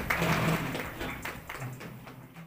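Scattered sharp clicks and taps among a room's faint voices, fading out steadily.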